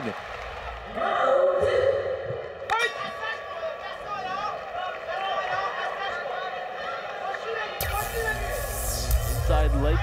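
Fight-arena background of crowd voices and shouting mixed with music over the PA, with a sharp knock about three seconds in. A deep rumble and a high hiss join in about eight seconds in.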